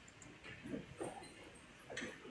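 Quiet room tone with a few faint, short murmured vocal sounds, two close together in the middle and one at the end.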